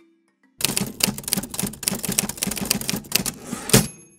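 Typewriter keys clattering rapidly for about three seconds, starting about half a second in and ending in one harder strike near the end. It is a sound effect over soft mallet music.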